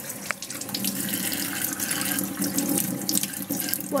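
Kitchen tap running steadily into a stainless steel sink as a gutted sea bream is rinsed under the stream, the water splattering over the fish and hands.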